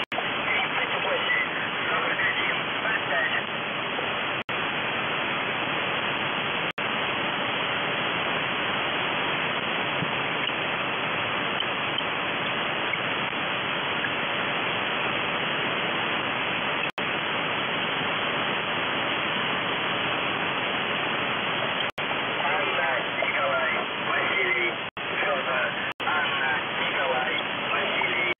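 Shortwave radio static from a receiver tuned to 4625 kHz, the frequency of UVB-76 'The Buzzer': a steady hiss with faint warbling sounds at the start and again near the end. The audio cuts out for an instant about seven times.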